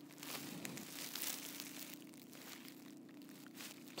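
Faint rustling and crinkling with a few small clicks, strongest in the first two seconds, over a low steady hum in the van's cabin. This is the noise of the phone being handled as it moves down the dashboard to the cup holders.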